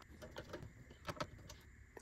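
Faint small clicks and taps of a metal M.2 heatsink plate and screwdriver being worked on a PC motherboard as the plate is seated over an NVMe drive and screwed down; a few scattered clicks, the clearest a little over a second in.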